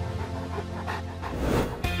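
A Rottweiler panting, breath after breath, over soft background music.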